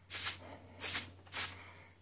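Three short hissing sprays from a Tectyl aerosol can through a red extension straw, about half a second apart: anti-corrosion coating being sprayed onto screws set in freshly drilled holes in the bodywork.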